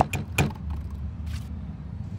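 City street ambience: a steady low rumble of distant traffic, with two sharp taps in the first half-second and a brief hiss about midway.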